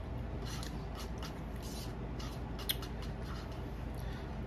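A person chewing a spoonful of rice with the mouth open, giving a run of short wet smacking clicks every few tenths of a second, with one sharper click a little before three seconds in. A steady low hum runs underneath.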